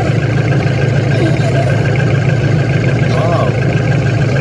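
A vehicle engine idling steadily, a constant low hum with no change in speed.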